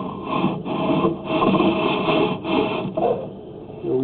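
Sewer inspection camera and its push cable being fed down a cast iron drain line, making irregular scraping and rubbing that gets quieter about three seconds in.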